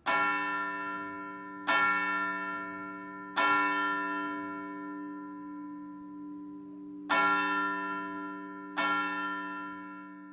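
A single large church bell tolling, every strike on the same note and ringing on as it fades. It strikes three times about a second and a half apart, pauses, then strikes twice more.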